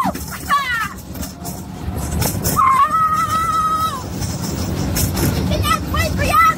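A young rider on a roller coaster screaming and laughing, with one long held scream in the middle, over steady wind rush and the rumble of the ride.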